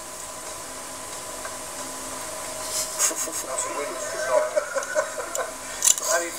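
Indistinct voices talking quietly over a steady hiss, heard through a television's speaker. The first two seconds or so hold mostly hiss, then the voices pick up.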